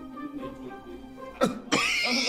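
Faint background music, broken about one and a half seconds in by a single short cough; just before the end a louder hissing sound starts.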